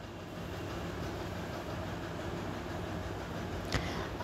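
Steady background noise with no clear pitch, like a fan or distant traffic, with one short knock near the end.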